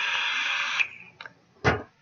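A long, hard draw through a rebuildable dripping atomizer on a mechanical vape mod: airflow hiss with the coil sizzling, ending just under a second in. About a second and a half in comes one short puff as the vapour is blown out.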